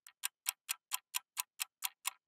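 Clock ticking, added as a sound effect: sharp, evenly spaced ticks about four a second with nothing else heard between them.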